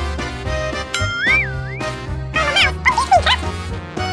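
Playful background music throughout. A wavering whistle-like tone comes in about a second in, and a few short squeaky gliding sounds follow just before the three-second mark.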